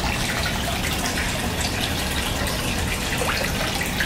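Steady splashing of water pouring from a pipe outlet into a small pond.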